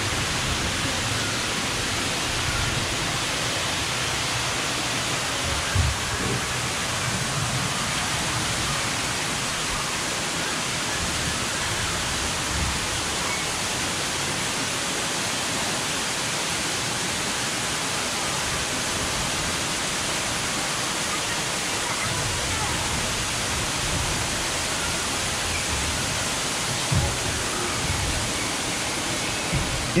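Steady rushing hiss of falling water, like rain or a waterfall, in a rainforest show scene. A few faint low thumps come through it, once about six seconds in and again near the end.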